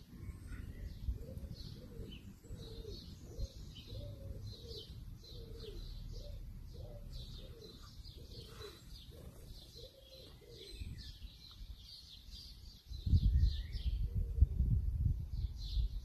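A pigeon cooing in a repeated run of low notes, with small songbirds chirping high above it. Near the end a louder low rumble on the microphone comes in.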